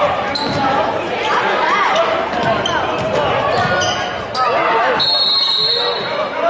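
Basketball game sounds in a school gym: voices of players and spectators calling out over a basketball bouncing on the hardwood floor. A steady high whistle sounds in the last second, typical of a referee's whistle stopping play.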